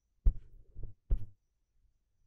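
Three dull, low thumps, the first and last the loudest, about a second apart at the outside.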